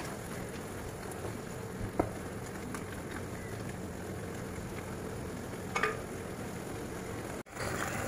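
Sliced apples frying in melted butter and brown sugar in a pan, a steady sizzle as a wooden spatula stirs them, with a sharp knock of the spatula against the pan about two seconds in and another near six seconds.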